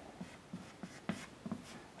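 Chalk on a blackboard: a series of about six short, faint taps and strokes as a dashed line is drawn.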